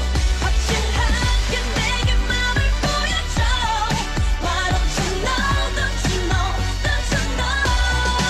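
K-pop song playing: a sung vocal line over a steady beat and strong bass.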